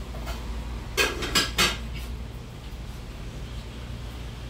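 Tableware clinking: a ceramic plate and cutlery or glasses knocked together, three quick clinks with a short ring about a second in, over a low steady hum.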